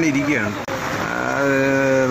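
A man talking in Malayalam, with a long drawn-out, steady-pitched sound in the last part; a noisy hiss of rain and traffic underneath in the short gap between words.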